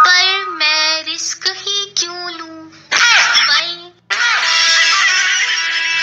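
Music with a high-pitched singing voice in short phrases. It breaks off briefly about four seconds in, then resumes densely.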